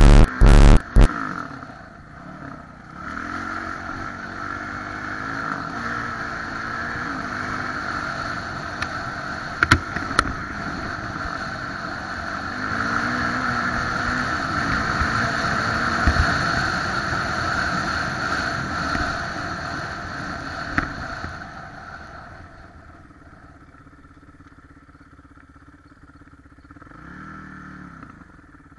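Kawasaki 450 dirt bike's four-stroke single-cylinder engine running under throttle as it is ridden across rough ground, with a few rises in revs and sharp knocks from the bike hitting bumps. The engine falls away to a much quieter level near the end.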